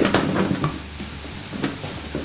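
Chunks of raw potato, onion and red pepper tumbling out of a bowl into a baking tray, a quick clatter of knocks in the first half-second, then a few lighter knocks as the pieces are pushed around by hand.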